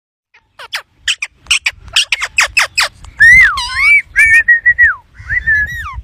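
Rose-ringed parakeet calling: a quick run of short, sharp chirps sweeping downward, then clear whistled notes, one gliding down and back up, others held level.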